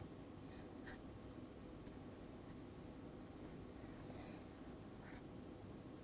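Faint scratching of a stylus drawing lines on a tablet screen: several short strokes over a low steady room hum.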